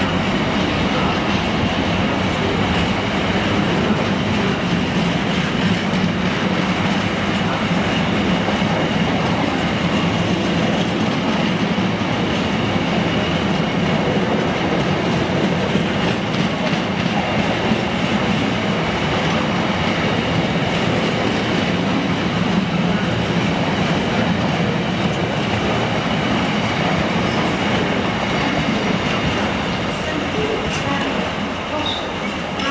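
Empty intermodal container flat wagons of a freight train rolling past at speed, their wheels running steadily and continuously over the track, easing slightly as the last wagon goes by at the end.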